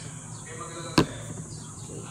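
A single sharp knock of a hard object about halfway through, as the slime things are handled.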